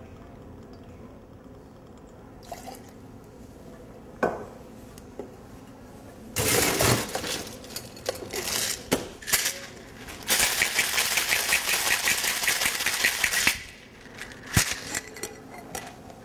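Cocktail being made in a Boston shaker (metal tin and mixing glass): ice clatters into it about six seconds in, then it is shaken hard for about three seconds, the ice rattling in a fast, even rhythm, followed by a few knocks as the tin is handled.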